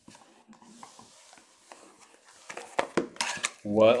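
Cardboard trading-card hobby boxes being handled on a desk: faint rustling, then a quick run of sharp knocks and clatters in the last second and a half as the boxes are moved and set down.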